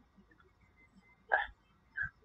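A man's single short hiccup about a second and a half in, followed by a briefer, fainter sound at the end.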